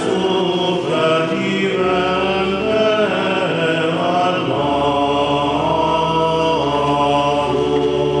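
Choir singing sacred chant, several voices holding long notes that move from pitch to pitch.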